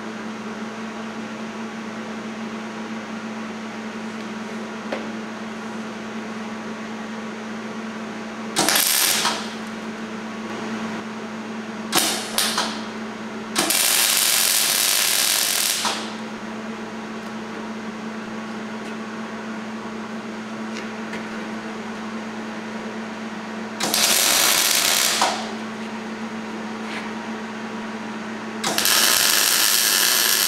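Gas-shielded MIG welder laying tack welds on steel tubing: about six short bursts of welding arc, the longest about two seconds, with the last starting near the end. A steady hum runs between the bursts.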